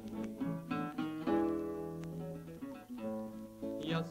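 Acoustic guitar playing an instrumental passage between sung verses of a Mexican folk song: plucked notes, then a chord left ringing about a second in, then more single notes.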